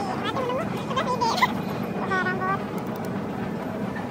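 High-pitched, sped-up voices chattering in short bursts, the footage played at double speed, over a steady background rumble.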